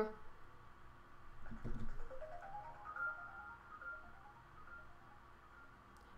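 A faint electronic tune of short notes stepping upward in pitch, then holding a high note, with a soft thump about a second and a half in.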